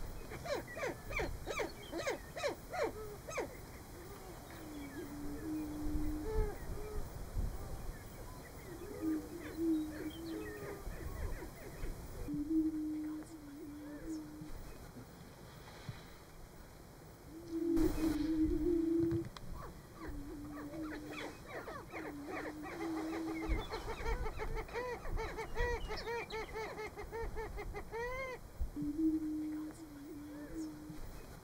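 Greater prairie-chicken males booming: low, hollow tones about a second long, repeated every few seconds from several birds, the loudest about eighteen seconds in. Short chattering calls of other birds on the lek run between the booms.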